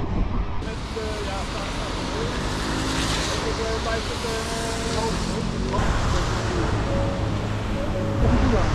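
Street noise on a wet road: a steady hiss of traffic and wind, with the sound changing abruptly about half a second in and again near six seconds.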